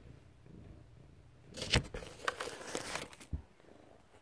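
Handling noise of a phone being picked up and moved: rustling with several sharp clicks from about halfway through, and a low thump near the end.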